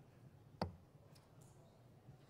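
Near silence with a single short, sharp click about halfway through.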